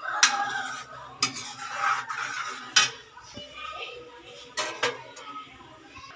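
Metal ladle stirring a thick curry gravy in a metal kadhai, scraping and knocking against the pan with about five sharp metal clinks.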